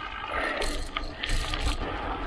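Mountain bike rear freehub ratchet clicking while the wheel turns without pedalling, over a low rumble of wind and tyres.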